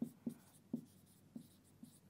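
Marker pen writing on a whiteboard: about five short, faint strokes.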